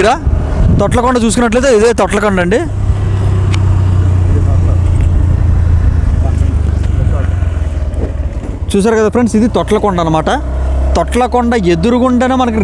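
Motorcycle engine running steadily at cruising speed, heard from the rider's seat as a low, even drone. A man talks over it at the start and again near the end.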